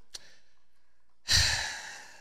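A man's short sigh, a breath pushed out into a close-up microphone a little over a second in, with a low rumble from the breath hitting the mic. A faint click comes shortly before it.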